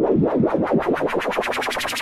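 Electronic music playback led by a synth riser: a stuttering pulse that speeds up and grows brighter as it builds.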